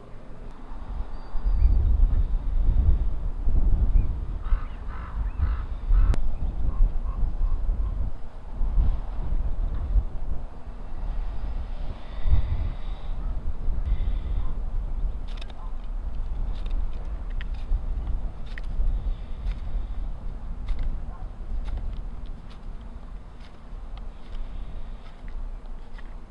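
A knife blade shaving thin curls off a wooden stick in short strokes, under a gusty low rumble of wind on the microphone. A bird calls a few times about five seconds in and again around twelve seconds.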